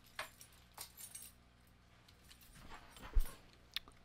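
Faint handling sounds of someone moving about and picking up a small object: scattered light clicks and rustles, then a short thump about three seconds in, over a faint steady low hum.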